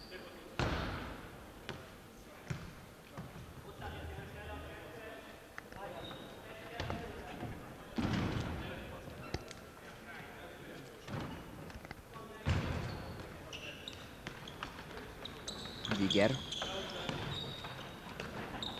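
A futsal ball being kicked and bouncing on a wooden sports-hall floor: several sharp thuds at irregular intervals a few seconds apart, the loudest near the end, with players' voices in the hall.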